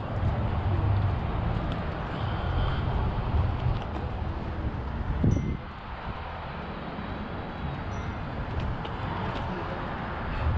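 Steady low outdoor background rumble with a short voice about five seconds in.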